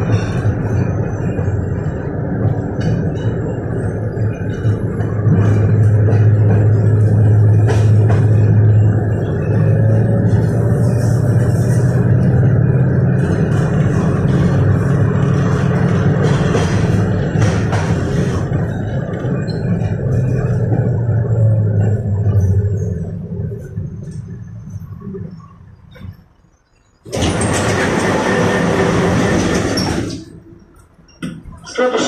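Inside a 1985 KTM-5M3 (71-605) tram: a steady low rumble of wheels on rails with the hum of its DK-259G3 traction motors, fading away as the tram slows to a stop. About three seconds before the end a loud hissing rush starts suddenly and holds.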